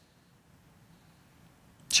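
Near silence: faint steady hiss, with a man's voice starting at the very end.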